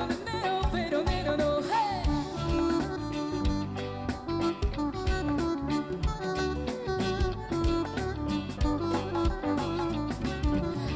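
A woman singing a pop medley with band accompaniment and a steady beat.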